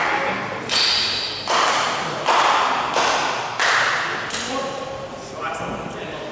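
Table tennis balls being hit: six sharp clicks, roughly one every three-quarters of a second, each echoing in a large sports hall. Voices follow near the end.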